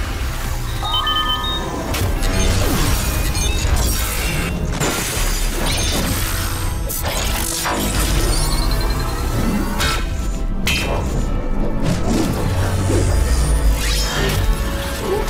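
Cartoon transformation sequence: loud dramatic music layered with sound effects, with many sudden hits and crashes throughout.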